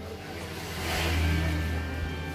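A motor vehicle passing by, its engine rumble and noise swelling to a peak a little past a second in and then fading.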